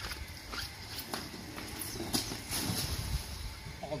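Irregular light knocks and clicks from a coiled corrugated pool vacuum hose being handled and carried, with footsteps on the pool deck, over a steady low rumble.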